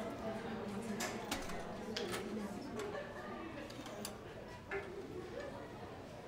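Low murmur of several voices in a hallway, broken by scattered light clicks and knocks.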